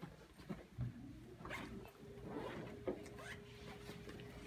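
Quiet rustling of clothing and bags with light clicks and knocks as belongings are packed up by hand. A faint steady hum comes in about a second in.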